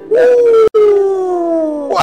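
A single voice holding one long, drawn-out cry that slides steadily down in pitch, broken by a split-second cut about a third of the way through.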